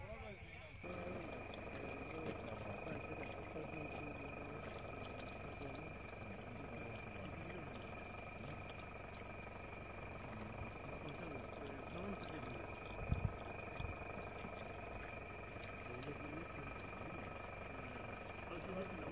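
Indistinct voices of several people talking, under a steady high-pitched whine. A couple of low thumps come about two-thirds of the way through.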